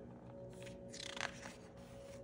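A picture-book page being turned by hand: a faint papery rustle and swish with a few small crackles, about a second in.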